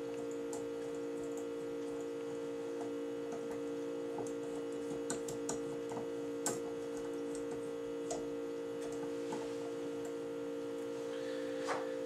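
A steady hum of two held tones, one lower and one higher, with faint scattered ticks and clicks.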